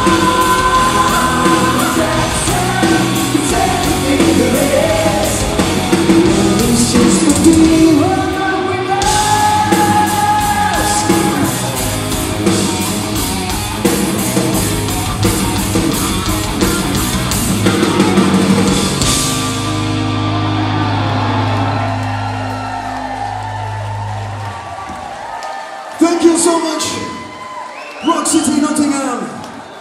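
Glam metal band playing live: drums, electric guitars and bass with sung vocals, the song ending on one long held chord that rings out and fades about twenty seconds in. A short, loud yelled vocal comes near the end.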